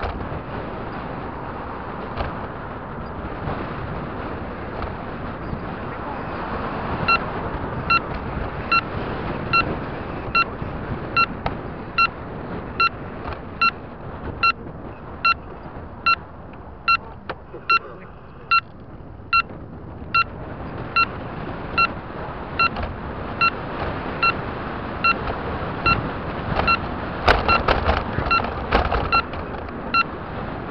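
Road and wind noise from a moving car, with a turn-signal indicator beeping about every 0.8 s from about a quarter of the way in. A short run of knocks and rattles comes near the end.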